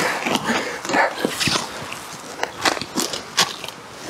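Irregular rustling and crackling clicks of hands handling things, growing quieter toward the end.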